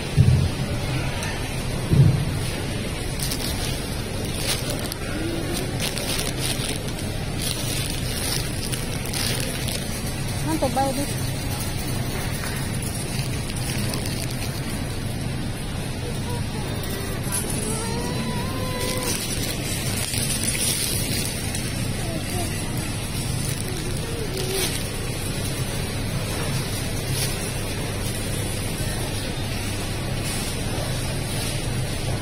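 Supermarket background noise: a steady hum and rumble with faint, distant voices and intermittent rustling of plastic. There are two sharp thumps near the start.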